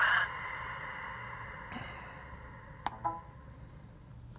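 A click, then a short buzzy beep about three seconds in, from a Nirvana NV14 radio transmitter as it finishes booting after a firmware update.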